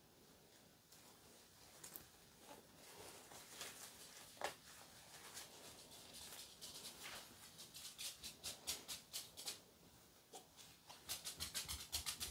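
Faint handling sounds of a vinyl doll limb and its stuffing being worked by hand: soft rustles and scattered small clicks, turning into a quick run of little ticks near the end.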